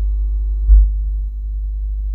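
A steady low hum with a few faint higher steady tones over it, and a brief swell about two-thirds of a second in.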